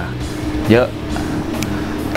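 A man's voice speaking Thai over a bed of background music with steady sustained low notes.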